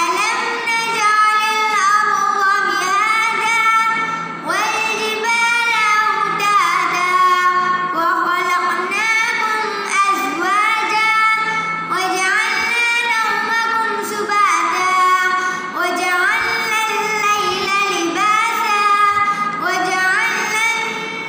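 A young boy's voice reciting the Quran in melodic tilawah style, in long chanted phrases with held notes and sweeping, ornamented pitch glides.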